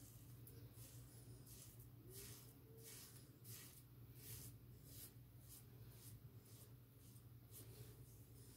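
Safety razor with a double-edged blade drawn in short, faint scraping strokes over lathered skin, about one or two a second, the blade cutting through stubble.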